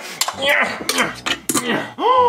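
Metal clanks and rattles of a folding aluminium attic ladder being climbed: a quick series of knocks.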